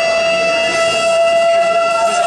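Live band music: one long held note sustained through, with accordion in the band and light cymbal ticks coming in partway.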